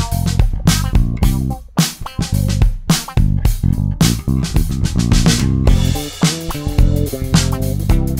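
Five-string electric bass (Wyn single-cut with Nordy pickups and an Aguilar 18-volt preamp) playing a line of low notes over a drum kit beat. Higher, busier notes come in over the last couple of seconds.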